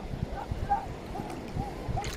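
Choppy sea water slapping and sloshing against a small boat, with faint distant voices calling across the water.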